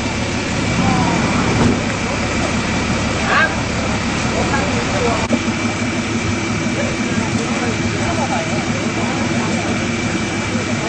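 Roadside ambience: a vehicle engine idling steadily under faint background voices talking, the low hum shifting about five seconds in.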